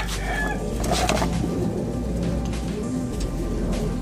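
Birds calling in the background over music playing.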